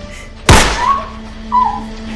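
A single loud gunshot about half a second in, followed by two short cries.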